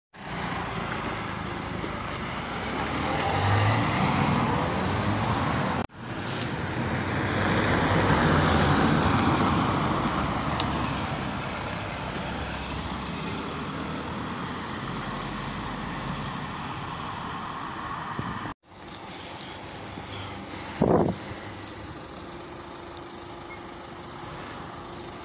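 Road traffic going past close by: rushing noise from passing vehicles that swells up and fades twice, broken by two brief dropouts, with a short loud noise near the end.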